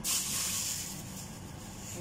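A pan of water simmering with pork trotter pieces in it, giving a steady hiss that starts abruptly and slowly fades.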